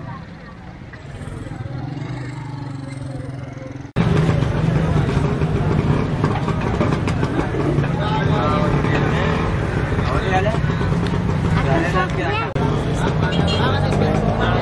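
Busy bazaar street sound: motorcycle and rickshaw engines running by among people's voices, then an abrupt cut about four seconds in to louder, close-by market chatter of many people talking at once.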